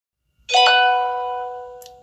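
A bell-like chime: two notes struck in quick succession about half a second in, then ringing on and slowly fading away.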